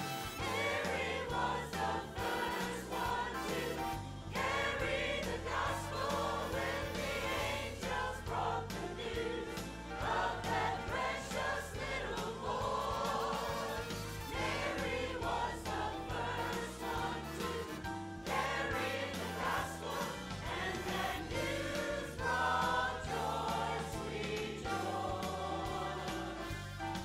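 Mixed-voice church choir singing a Christmas choral piece over an instrumental accompaniment, continuously and at a steady level.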